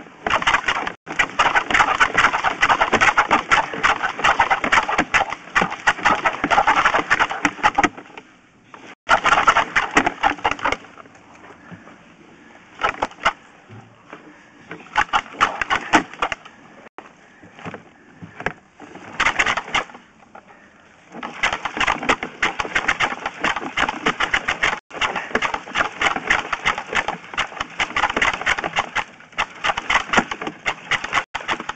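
Sewer inspection camera's push cable being pulled back and fed onto its reel, a dense clicking rattle in stretches of several seconds with short pauses between pulls.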